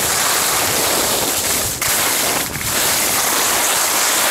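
Steady rushing noise of skiing downhill, heard from a camera worn by the skier: wind buffeting the microphone and skis hissing and scraping over chopped-up piste snow, with two brief dips around the middle.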